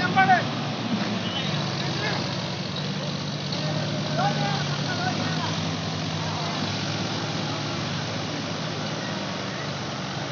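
A tractor's diesel engine running steadily at a moderate, even pitch. Brief shouts from onlookers break in near the start, which is the loudest moment, and again around four seconds in.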